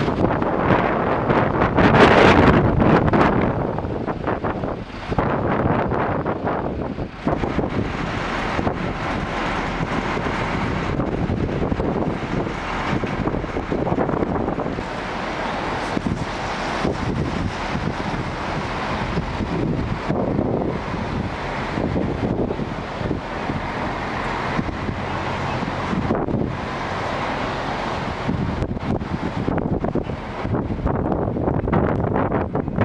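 Gusty storm wind buffeting the microphone in a continuous rush, loudest in a strong gust about two seconds in, with vehicle noise under it.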